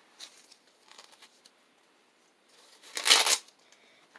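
Handling noise of protective pads and their packaging: faint rustles, then one loud, short rustling scrape about three seconds in.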